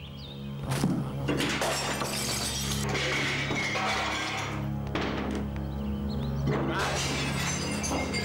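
Glass and objects being smashed: a series of sudden crashes with shattering tails, about five over the stretch, over a steady low drone of background music.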